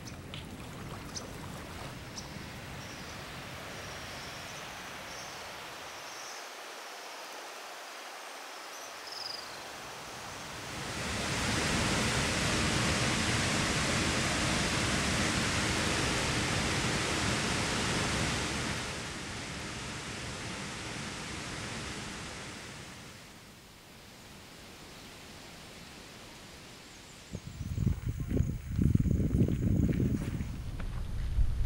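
Steady rushing of a large waterfall, loudest from about eleven seconds in for some eight seconds, then falling away. Before it, a quieter outdoor hiss with faint high chirps; near the end, low thumps.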